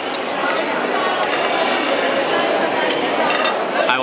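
The steady hubbub of many diners talking in a busy restaurant hall, with a few sharp clinks of cutlery and dishes, around a second in and again about three seconds in.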